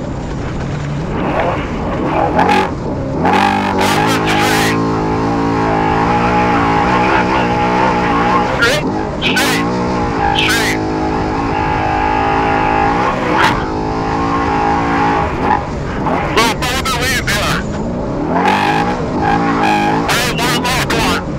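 Off-road Trophy Truck racing flat out, heard from a hood-mounted camera: the engine runs hard, its pitch holding and then rising and falling with the throttle through the middle. Repeated sharp bursts of noise cut across it, heaviest about three to five seconds in and again near the end.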